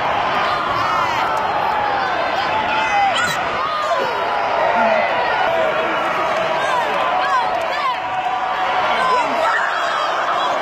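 Arena crowd shouting and cheering: many voices overlapping in a steady loud din, with individual shouts rising and falling above it.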